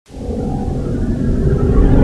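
Intro music for a title sequence: a low rumbling drone with a faint held tone, fading in from silence and building in loudness.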